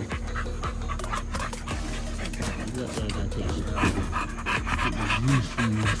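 Young bully-breed dogs panting quickly and close by, clearest in the second half, over background music.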